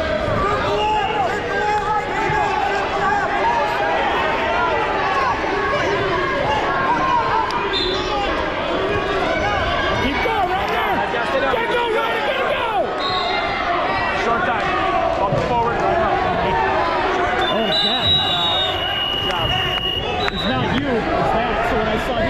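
Spectators in a gymnasium talking and shouting over one another, a steady wash of many voices, with a few short high-pitched tones.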